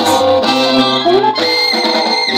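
Loud live band music with plucked guitar, amplified through PA speakers, with a woman singing into a microphone over it.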